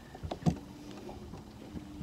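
Faint steady hum of a boat's electric trolling motor, with a single knock about half a second in.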